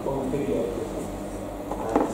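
A man's voice speaking in short, broken fragments, with a brief knock near the end.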